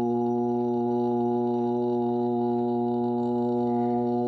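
Steady devotional music drone: one low pitch held unchanged with its overtones, without a break or beat.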